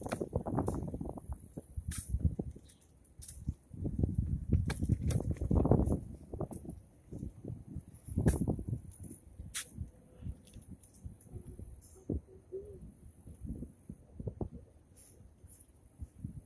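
Wind gusting on the microphone in irregular low rumbles, heaviest in the first half, with the soft knocks of footsteps on a concrete sidewalk showing through in the quieter second half.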